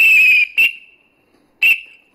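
A whistle blown in three sharp blasts: a long one at the start, a short one right after, and another short one near the end, like a night watchman's whistle.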